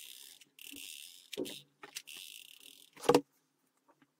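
Hot glue gun being run along a cardboard milk carton, heard as three short stretches of high hiss, followed by a loud knock about three seconds in as a cardboard strip is pressed onto the carton against the table.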